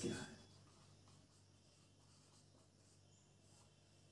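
Faint strokes of a marker pen writing on a whiteboard, heard as a few soft scratches against near-silent room tone.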